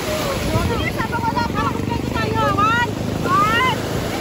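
Several people's voices, talking and calling out with sharp rises in pitch, over a steady low engine drone.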